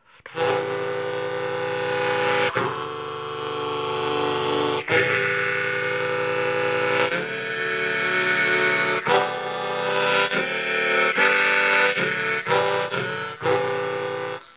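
Pulmonica, a very low-pitched harmonica with a spiral (circular) reed layout, played as a run of held chords that sound deep and quite powerful. The chords change about every two seconds at first, then more quickly near the end.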